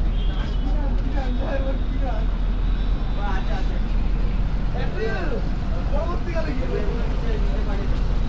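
Six-cylinder engine of a river launch running steadily under way, a constant low drone heard from the deck.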